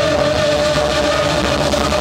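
Live pop-rock band with a drum kit and singers playing loud through a concert PA, one long note held steady throughout.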